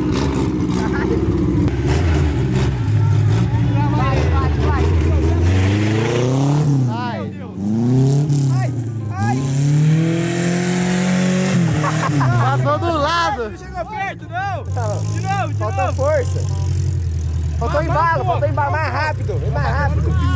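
Chevrolet Chevette's four-cylinder engine revving hard, its pitch climbing and falling several times as the rear-drive car struggles for grip and spins its wheels on dry grass.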